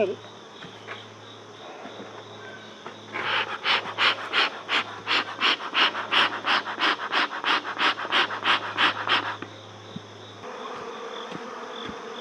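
Bee smoker's bellows pumped by hand in a steady rhythm, puffing air through the fuel to stoke it and make more smoke. About three to four puffs a second start about three seconds in and stop some six seconds later.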